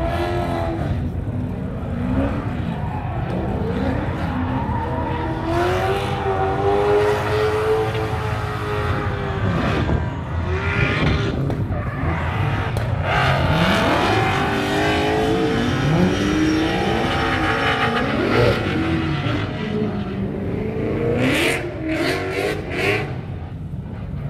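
A drift car's engine revving hard, its pitch repeatedly rising and falling as the driver works the throttle through the slides. Its tyres squeal as they spin and smoke.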